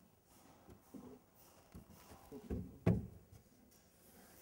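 A few soft knocks and bumps from a gloved hand pressing and fitting a car door trim panel by the armrest. The loudest is a thump about three seconds in.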